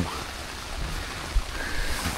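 Heavy rain falling steadily on the fabric of a tent, heard from inside, with a single brief low thump about one and a half seconds in.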